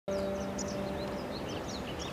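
Small birds chirping in quick short high calls over a steady outdoor background hiss. A low steady hum fades out about a second in.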